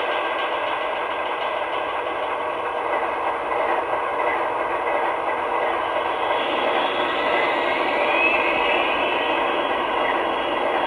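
An MTH Proto-Sound 2 model of a Union Pacific gas turbine locomotive plays its turbine sound through its onboard speaker: a steady rushing noise, with a whine rising in pitch about seven seconds in.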